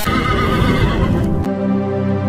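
Loud, noisy din on a tbourida field just after the horsemen's musket volley, cut off about three quarters of the way through by steady background music.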